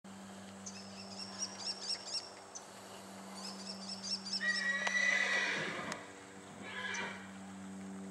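A horse whinnying about halfway through: one long call that starts high and drops in pitch, followed by a shorter second call about a second later.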